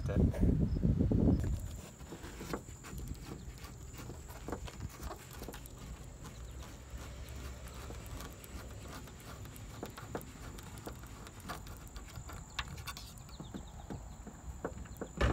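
Scattered irregular clicks and taps of hands and pliers working at a car's power antenna mount, over a steady thin high-pitched tone. A louder low rumble of handling in the first second and a half.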